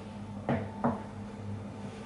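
Two short knocks, about a third of a second apart, from things being handled at a kitchen counter, over a steady low hum.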